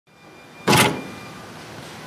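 Large industrial woodworking machine running with a steady hum, and a short loud mechanical whirring burst about two-thirds of a second in that dies away within a third of a second.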